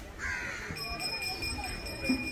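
A crow cawing once, harsh and short, soon after the start, followed by a steady high-pitched tone from about a second in.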